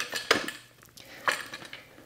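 Metal hooks clinking against wooden grip blocks as they are hooked on: a few separate sharp clinks, one near the start, one about a third of a second in, and one past the middle.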